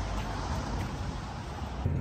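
Steady vehicle engine rumble with wind noise on the microphone. Near the end it changes to a lower, steadier engine hum heard from inside a tractor cab.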